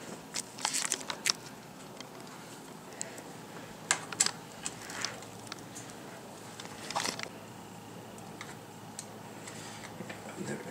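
Scattered small clicks and taps of stainless steel hex-head screws and a hex key being handled and fitted into a radar mount's plate, with louder clusters about a second in, around four seconds and around seven seconds.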